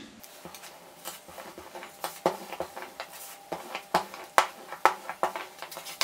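Rolling pin working a lump of fondant on a hard work surface: an irregular run of light clicks and knocks, sparse at first and busier from about two seconds in.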